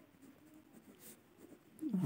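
Faint scratching of a pen writing on lined notebook paper, with a short scratchy stroke about a second in.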